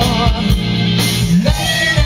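Live funk band playing: electric bass holding low notes under a drum kit beating about twice a second, with electric guitar and a voice singing over it.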